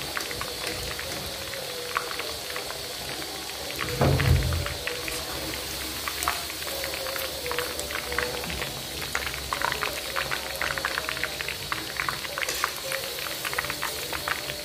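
Chicken pieces deep-frying in hot oil in a kadai, a steady dense crackling and spattering, with a low thump about four seconds in.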